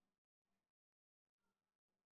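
Near silence: only very faint traces of background hum.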